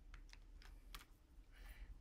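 Faint light clicks of small plastic glitter jars being handled and set on a tabletop: a few quick taps in the first second, then a soft rustle near the end.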